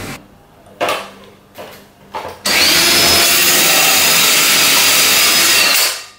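Cordless drill driving a 4-1/4 inch hole saw through the ceiling, cutting a hole for a recessed pot light: a loud, steady grinding cut with a motor whine that starts about two and a half seconds in, runs about three and a half seconds and stops just before the end.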